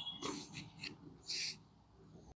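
Faint bird calls: a few short, scratchy chirps, one more near the end.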